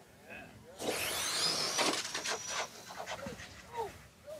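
Radio-control drag car launching down the strip: a burst of tyre and motor noise about a second in, with a high motor whine that rises, holds briefly and then fades as the car runs away.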